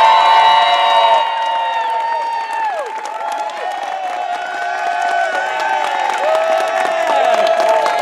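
A group of people cheering and clapping, with many long, high-pitched held whoops and screams overlapping; loudest at the start.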